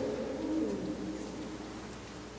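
A man's voice dying away in the long reverberation of a large cathedral, followed by quiet room ambience with a faint, low wavering tone.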